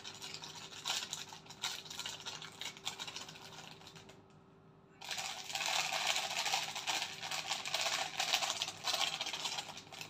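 Thin clear plastic bag crinkling as it is handled, stopping briefly about four seconds in, then crinkling louder from about five seconds in as its contents are tipped out into a plastic food box.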